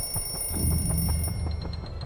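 Twin-bell mechanical alarm clock ringing, its hammer striking the bells in a rapid, even rattle that fades near the end.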